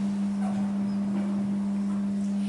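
Steady low hum, with faint marker strokes on a whiteboard as a word is written.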